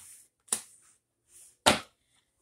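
Tarot cards being handled: two sharp slaps about a second apart, the second the louder.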